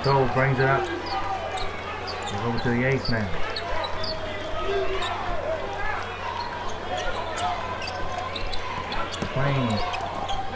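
Basketball being dribbled on a hardwood arena court during live play, with sneakers squeaking and steady crowd noise. Short shouted voices come at the start, about three seconds in, and near the end.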